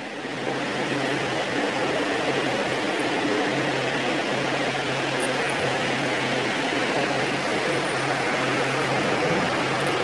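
Steady rushing noise with a faint, constant low hum underneath, unchanging throughout.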